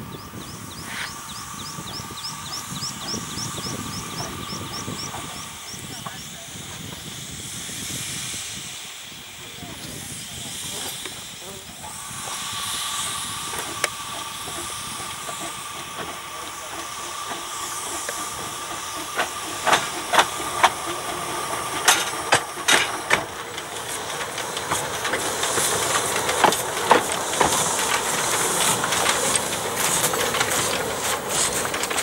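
Narrow-gauge steam locomotives hissing steam, with a steady high whine in the first few seconds and again through the middle. In the second half a series of sharp knocks and clicks grows louder as a locomotive comes close.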